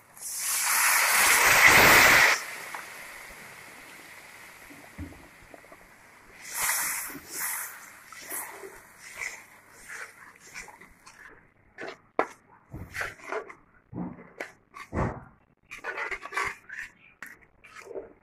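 Water poured onto hot fried masala in a pan, sizzling loudly for about two seconds and then dying down to a fading hiss. After that a metal spatula scrapes and knocks in the pan as the watery gravy is stirred.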